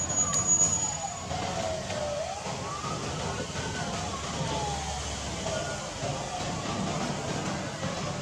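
A siren wailing, its pitch rising and falling slowly in long sweeps.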